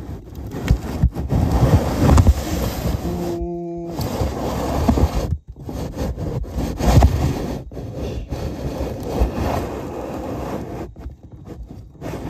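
Loud, irregular scraping and rubbing, broken by a brief low hum about three seconds in.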